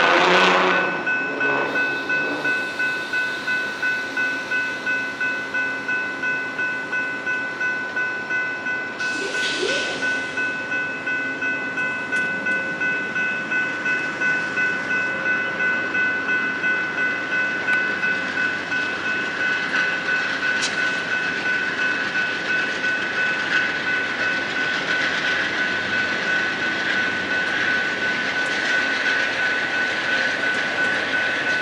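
Grade-crossing warning bell ringing in a steady, even beat while a passenger train's bilevel cars roll past, gathering speed as the train pulls out, with wheel noise on the rails rising toward the end.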